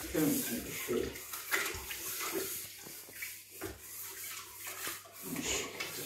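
Water from a kitchen tap splashing into the sink as something is washed by hand, with a few short knocks.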